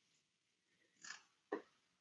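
Near silence: room tone in a pause between the speaker's sentences, with two faint brief sounds about a second in and half a second later, the second just before he speaks again.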